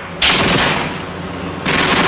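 Loud machine-gun fire in an action-film soundtrack. It starts suddenly just after the beginning, fades, and breaks out again near the end.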